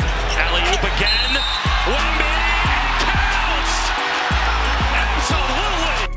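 Basketball game audio: arena crowd noise with a basketball being dribbled on the hardwood court, over a steady low bass line of background music.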